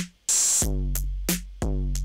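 Programmed Kit-Core 808 drum-machine beat in Ableton Live, played through the Overdrive effect to make it a harder sound. Long booming 808 kicks are thickened by the distortion, with a clap-like snare hit about a quarter second in and short hi-hat ticks between the beats.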